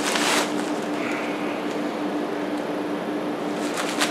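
Plastic mailing bag rustling and crinkling as it is handled and shaken out, with sharper crackles at the start and near the end, over a steady low hum.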